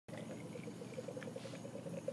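A faint, low pulsing hum, about nine pulses a second, with a couple of soft clicks about a second in.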